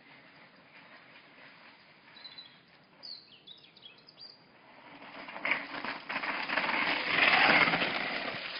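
A few faint bird chirps, then a mountain bike coming down a steep dirt drop: tyre noise on loose soil with knocks, growing louder and loudest as it passes close near the end.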